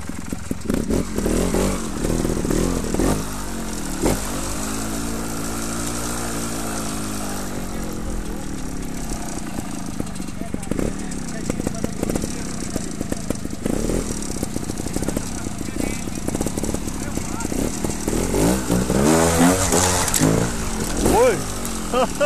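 Trials motorcycle engine running, mostly idling, with one slow rev up and back down a few seconds in and a run of quick throttle blips near the end.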